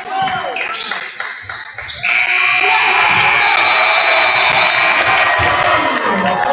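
A basketball dribbled on a hardwood gym floor, then about two seconds in the scoreboard's game-ending horn sounds a loud steady tone for about three seconds over crowd noise as the clock runs out.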